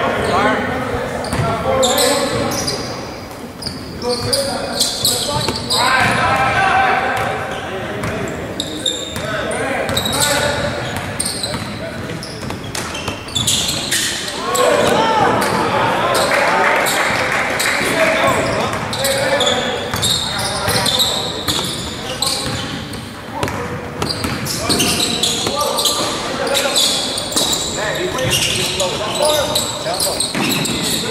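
Indoor basketball game: a ball bouncing repeatedly on a hardwood court, sneakers squeaking, with a cluster of squeaks around the middle, and indistinct shouts from players and spectators, all echoing in a large gym.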